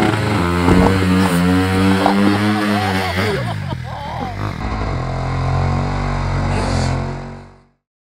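Enduro dirt bike engine revving up close, its pitch holding and stepping between revs, with a woman's voice over it; the sound fades out near the end.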